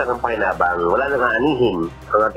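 A man speaking in Tagalog over a telephone line, the voice thin and narrow as through a phone, with news background music underneath.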